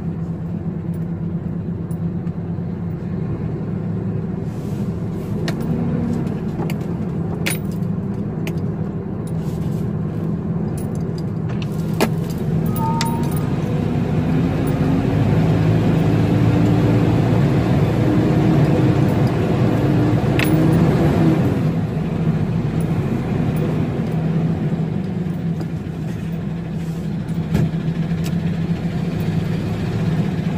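Diesel truck engine running steadily at low revs. From about twelve seconds in its pitch climbs slowly as it speeds up, then falls back about twenty-one seconds in. Small clicks and rattles sound over it.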